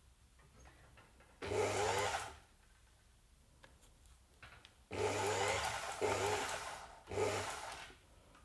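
Electric fur sewing machine stitching the two ends of a twisted fox-fur strip together in three short runs, each with a steady motor hum. The first run starts about a second and a half in and lasts about a second. The second starts near five seconds and lasts about two seconds. The last is brief, just before the end.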